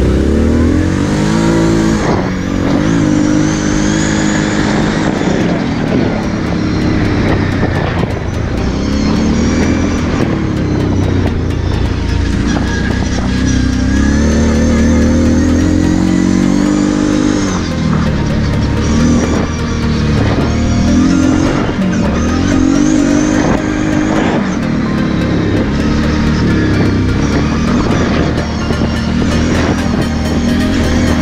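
Kawasaki KFX 700 V-Force sport quad's V-twin engine under way, its revs climbing and dropping again and again as it accelerates and shifts.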